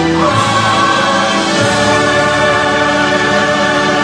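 A choir singing a slow song in long held chords, the harmony changing twice.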